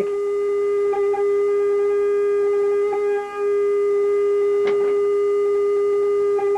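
A sine-wave test tone played through a phase shifter effect: one steady mid-pitched tone with faint overtones, which dips briefly in loudness about three seconds in.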